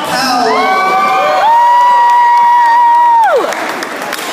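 Spectators yelling and cheering: several held shouts overlap, then one loud, high yell is held for about two seconds and falls away near the end.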